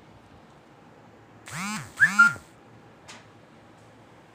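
Two short voice-like calls about half a second apart, each rising and then falling in pitch, followed by a faint click about a second later.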